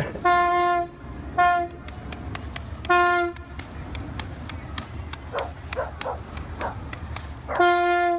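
Coach bus horn honking, a single steady note each time: three short blasts in the first few seconds, then a longer one near the end.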